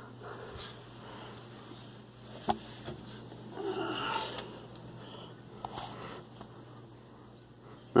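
Quiet handling sounds: a few light clicks and a short breathy noise about four seconds in, over a steady low hum.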